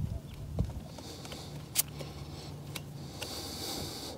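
Quiet handling noise with a couple of sharp clicks as a portable air pump's hose is screwed onto a motorcycle tyre's valve stem, over a faint steady low hum that fades near the end.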